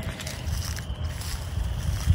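Low, uneven rumble of wind on the microphone.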